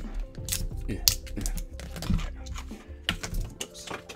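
Plastic fineliner pens clicking and clattering as they are pulled from their plastic holder and dropped onto a sketchbook cover, a string of sharp clicks over background music.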